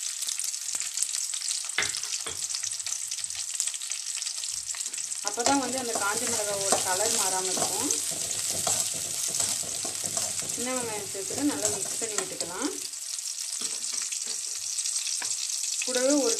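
Shallots and dried red chillies sizzling in hot oil in an aluminium kadai as they are stirred, with the occasional sharp click of the spoon against the pan. Wavering, voice-like tones rise twice over the sizzle, about five seconds in and again near the eleven-second mark.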